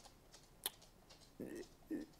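A near-quiet pause with one brief sharp click about two-thirds of a second in, followed by faint murmurs of a man's voice near the end.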